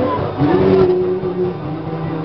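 Live band music with acoustic guitars and drums, with a long held note that slides up into pitch about half a second in and holds for about a second.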